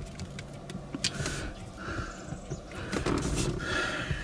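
Scattered light clicks and rubbing from a plastic car phone mount as the phone in its holder is swivelled on the mount's joint.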